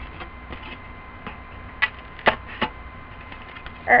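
A few sharp clicks and taps from a foam plate being handled on a tabletop, the loudest a pair a little after two seconds in, over a faint steady electrical hum.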